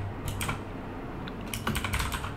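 Typing on a computer keyboard: a few keystrokes, a short pause, then a quick run of keystrokes near the end.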